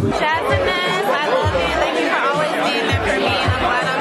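Music with a bass beat playing under voices and party chatter.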